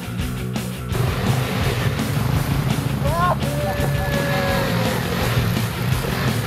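Music for about the first second, then a dirt bike engine running through a river crossing, with water splashing. About three seconds in a person calls out with a rising, drawn-out shout.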